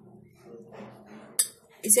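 A spoon clinks once against a dish, sharp and loud, about a second and a half in, after soft handling sounds as green pea stuffing is spooned onto rolled-out paratha dough.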